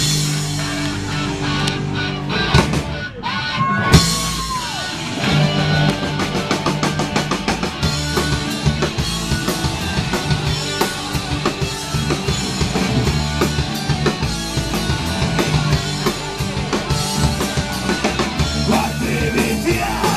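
Live rock band playing on stage with electric guitars, bass and drum kit. A few seconds of held guitar chords, then a loud hit about four seconds in as the drums and the full band come in at a fast, steady beat.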